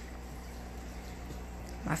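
Steady low hum of aquarium equipment running, with a faint hiss above it.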